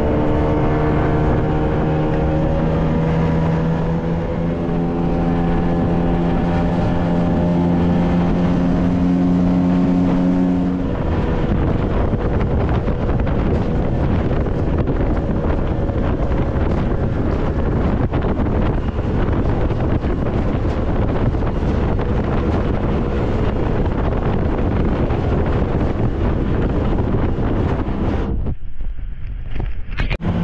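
Small dinghy's outboard motor running under way, a steady engine note clear for the first ten seconds or so. After that it is largely buried under wind buffeting the microphone and the rush of choppy water against the hull.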